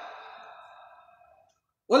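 A man's voice fading away in a slow, smooth decay over about a second and a half, like the echo of a hall or loudspeaker tail after his last recited word. Dead silence follows, and his voice comes back in loudly near the end.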